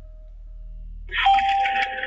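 A low hum, then about a second in a loud electronic telephone ringing tone starts: the opening of a recorded 911 emergency call, just before the dispatcher answers.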